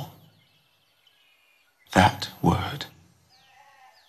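A man's voice says a short phrase about two seconds in, with quiet pauses either side that hold only faint high chirping tones.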